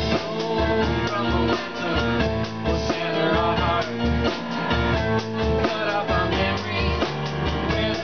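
Live rock band playing with a steady beat: drum kit, bass, guitar and keyboard together.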